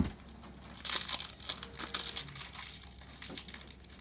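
Foil wrapper of a jumbo pack of Prestige football cards crinkling as it is handled, loudest about a second in.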